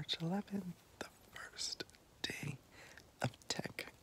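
A man's soft whispering and breathing just after waking, opening with a brief voiced sound that rises in pitch, with scattered small clicks throughout.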